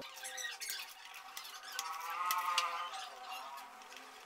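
Screwdriver working a screw loose on a motorcycle engine's centrifugal oil filter cover: a few light metallic clicks, then a squeak lasting about a second near the middle as the screw turns.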